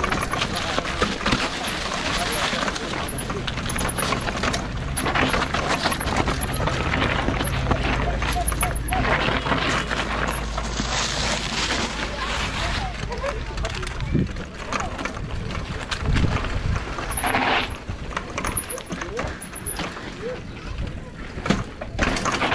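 Mountain bike descending a rough dirt trail, heard from a camera on the bike: tyres rolling and crunching over dry leaves, dirt and rocks with continual clattering knocks from the bike, and wind rumbling on the microphone, heaviest about a third of the way in.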